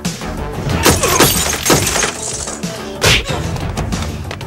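Movie fight-scene soundtrack: a music score under dubbed sound effects, with a quick series of hits and a shattering crash about a second in, then one hard hit a second before the end.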